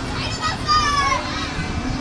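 Children's high-pitched shouts and cries over general crowd chatter, loudest from about half a second to a second in.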